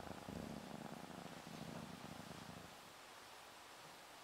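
Domestic cat purring softly, a low faint purr that fades out about three seconds in.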